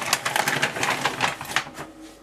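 Cookie wrapper crinkling with rapid crackles as it is handled, stopping about a second and a half in.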